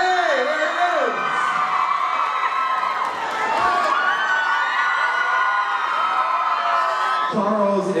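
Audience cheering and whooping with many high-pitched shouts as a performer comes on stage. It swells about a second in and dies down near the end as a man begins talking.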